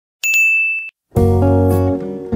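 A single bright electronic ding sound effect, as of a notification bell being clicked, held for well under a second. A little past halfway, strummed guitar music starts.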